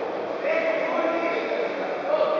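Voices shouting over the background din of a busy sports hall, with one long, drawn-out call beginning about half a second in.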